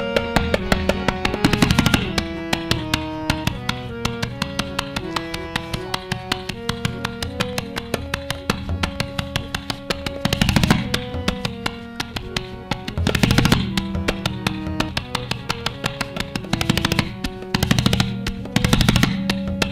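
Tabla solo with harmonium lehra accompaniment. Rapid strokes on the tabla pair, with ringing treble strokes and bass strokes from the bayan, run over a harmonium playing a repeating melody that moves in even steps. Denser, louder tabla flurries come several times, about two seconds in, near the middle and near the end.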